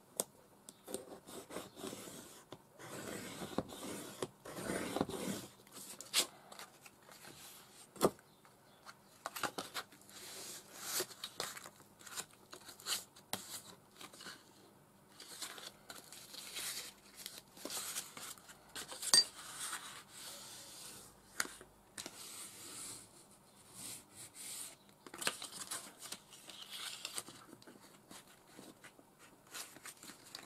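A plastic bone folder scraping and rubbing along kraft card against a metal ruler, with the card rustling and crinkling as a strip is creased and folded by hand. The sounds come in irregular bursts, with a few sharp clicks and taps.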